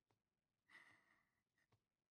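Near silence, with one faint breathy sigh about a second in.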